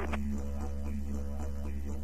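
Didgeridoo music playing a steady, pulsing drone, with the constant low hum of the light aircraft's cabin beneath it.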